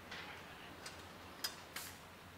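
Three short sharp clinks in the second half, the middle one loudest, of metal table frames and poles being handled and set down, over a faint low hum.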